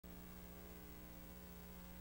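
Faint, steady electrical mains hum, a low buzz with several overtones, on a silent countdown leader.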